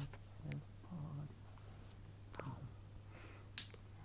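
Faint, short hummed 'mm-hmm' sounds from a voice, with a few sharp clicks, the loudest near the end, over a steady low hum.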